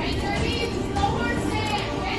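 Chatter of children's and adults' voices filling a busy room, with no one voice clear.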